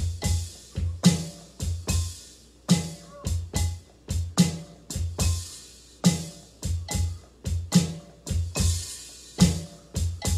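Electronic drum kit played with sticks: a steady repeating groove of bass drum thumps and snare and cymbal hits.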